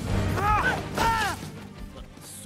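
Film soundtrack music under a fight, with two short, loud yells of effort from grappling fighters about half a second and a second in, and hits landing with them.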